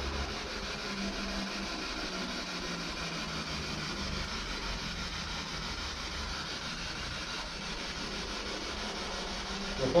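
Steady static hiss with a faint low hum underneath, unchanging throughout.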